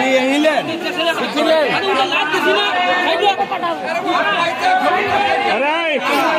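Many voices talking at once close by: loud, continuous crowd chatter.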